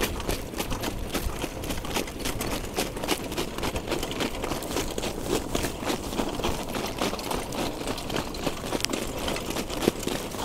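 A harness horse's cart rattling and knocking steadily in a quick, irregular clatter as it is driven along the track, with wind rumbling on the microphone.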